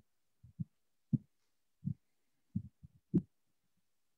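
Soft, low thumps and knocks through a video-call microphone, about seven in four seconds at uneven spacing, one near the end with a sharper click, and dead silence cut in between them.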